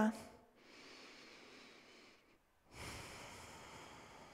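A woman's slow, audible breaths through the nose: a soft one beginning about half a second in, then a louder one about three seconds in that gradually fades.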